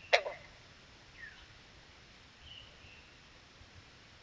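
A single short, sharp call right at the start, the loudest thing heard, then faint bird calls: a quick falling chirp about a second in and a brief thin whistle a little later.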